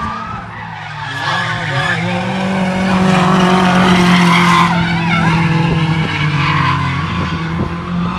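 Ford RS car drifting on a race circuit: the engine held at high revs while the tyres squeal and scrub, building to its loudest midway through as the car slides by in a cloud of tyre smoke.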